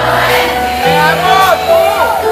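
Live band music over a large concert sound system, with held bass notes under it and the audience's voices singing and calling out along with it.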